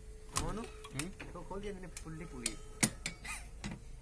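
Metal tools clinking sharply a few times against the car's engine-mount bracket and bolts, under indistinct voices.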